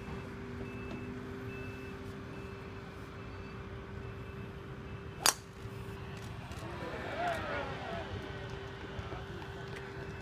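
A single sharp crack of a golf club striking the ball off the tee, about five seconds in, over a steady low hum. Voices of onlookers follow a couple of seconds later.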